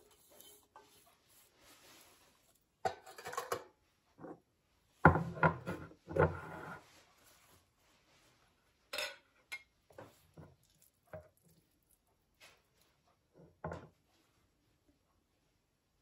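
Kitchenware clatter: a stainless steel bowl and pot knocking together as greens are tipped in, loudest about five seconds in, followed by lighter knocks and scrapes of a wooden spoon.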